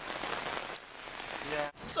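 Heavy rain pouring onto a street and pavement in a thunderstorm, a steady hiss. A man's voice comes in near the end.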